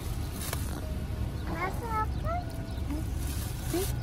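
The powered panoramic sunroof of a 2021 Kia Sportage slides open inside the cabin, over a steady low rumble from the car. A faint click comes about half a second in, and a hiss builds near the end as the roof opens.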